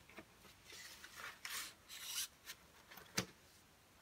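Faint handling noise of a vinyl record and its sleeve: soft rubbing and brushing swishes, with a sharp light tap a little after three seconds in.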